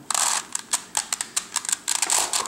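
Plastic Circle Crystal Pyraminx twisty puzzle being turned by hand: a quick, irregular run of light clicks as its faces rotate, while a corner piece is rolled into place with repeated R U R' U' moves.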